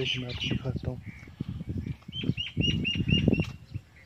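A small bird calling a quick run of about seven short, high chirps just past halfway, over irregular low thuds on the microphone.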